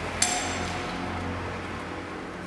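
A single sharp strike about a quarter of a second in, ringing on with several clear high tones as it fades, over a low steady hum.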